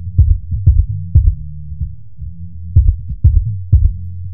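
Hip-hop instrumental beat in a stripped-down, low-end-only passage: a deep bass line with clusters of short, punchy low hits and no higher instruments.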